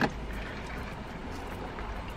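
Steady low rumble of a car's interior, with a single sharp click right at the start.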